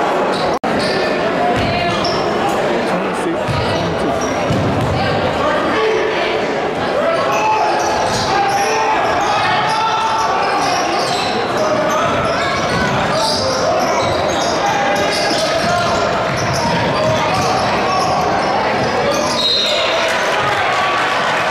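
Basketball game sounds in a large gym: continuous voices of players and spectators, with a basketball bouncing on the hardwood floor, all echoing in the hall. A brief dropout about half a second in.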